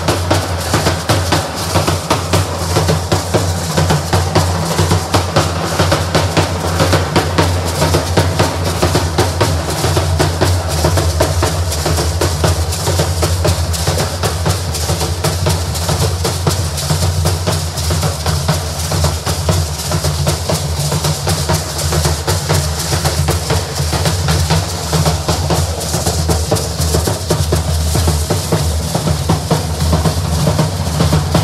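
Hand-carried bass drums beaten continuously in a steady, driving dance rhythm.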